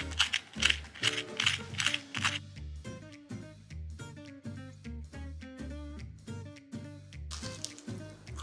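Crisp, freshly pan-fried cornmeal-and-flour crust crunching and crackling as a fork presses into it: a quick run of sharp crunches in the first two seconds or so. Background music with a steady beat plays under it throughout.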